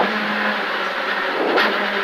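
Skoda Fabia R5 rally car's turbocharged four-cylinder engine running steadily, heard from inside the cabin, with road and tyre noise over it.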